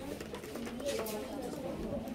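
Indistinct background chatter of several voices in a small room, with a couple of faint clicks.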